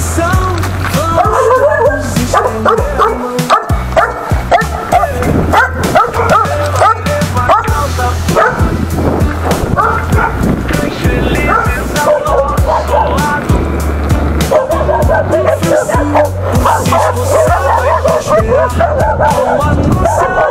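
Several dogs barking and yipping again and again over music with a steady bass beat.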